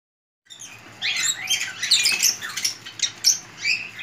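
Several small caged birds chirping in quick, high, sliding calls, which start about a second in.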